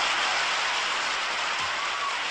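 A steady wash of white noise within an electronic dance track, a beatless noise passage between sections that eases slightly in level.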